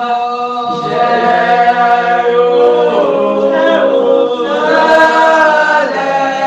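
Voices singing together unaccompanied in a slow Spiritual Baptist hymn chant, each note held long before the melody moves on, with changes about a second in, around three seconds and near the end.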